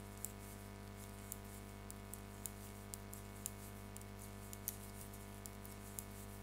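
Faint, irregular clicks of two metal knitting needles tapping together as stitches are knitted, about two a second, over a steady low hum.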